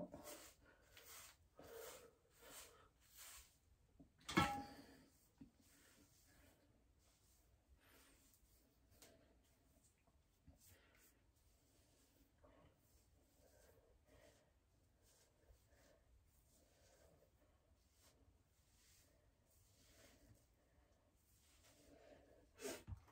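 A hairbrush stroking through thick natural hair: about five soft swishes in the first few seconds, then a brief louder sound about four seconds in. After that, only faint rustling as hands gather the hair into a ponytail; mostly near silence.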